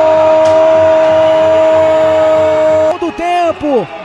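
A football commentator's long drawn-out goal cry, 'goooool', held loud at one steady pitch until it breaks off about three seconds in. It then gives way to quick commentary.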